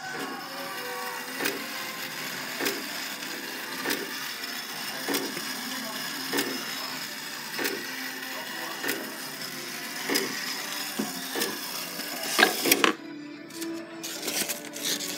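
Clocks striking noon: a steady, evenly paced series of hour strikes about one and a quarter seconds apart, ringing over the sustained tones of other clocks chiming at once. A louder clatter comes near the end.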